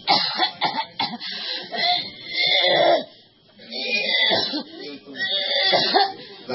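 A person's wordless vocal sounds, coughs and cries, loud and broken into short bursts, with a brief lull about three seconds in.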